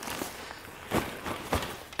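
Rucksack fabric rustling as the bag is handled and pulled down, with two soft knocks about a second and a second and a half in.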